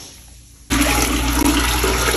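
Dirty mop water poured from a spin-mop bucket into a toilet bowl: a loud, steady gush and splash that starts suddenly about two-thirds of a second in.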